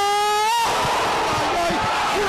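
Football radio commentator's long, sustained shout as a goal goes in, held on one note and rising slightly in pitch, breaking off about half a second in into loud, noisy cheering.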